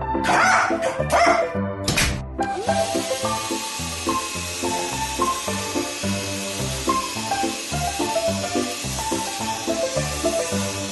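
A dog barking twice near the start over background music with a steady beat, followed by a couple of sharp knocks about two seconds in; after that, a steady hiss runs under the music.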